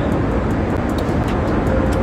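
Steady cabin noise of a private jet in flight: an even, low hum of engines and airflow.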